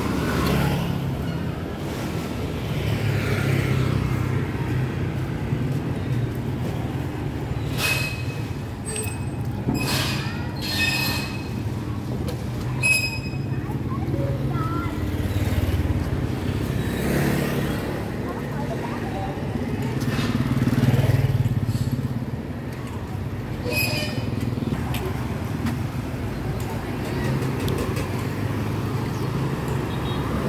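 Street traffic: motorbike engines running and passing, with a steady low rumble that swells for a moment about two-thirds of the way in. Voices can be heard in the background, and there are a few sharp clicks.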